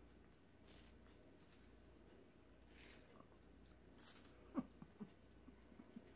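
Near silence with faint chewing of a soft snack: a few quiet crunchy bites and small mouth sounds.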